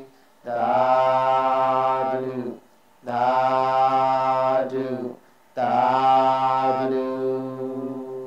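A single voice chanting a Buddhist recitation in three long, held lines, each about two seconds long with short breaths between them; the last line fades out near the end.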